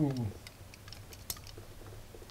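A man's drawn-out "ooh" falling away, then a few faint, scattered clicks and knocks of small plastic electronic modules being handled and unplugged on a workbench.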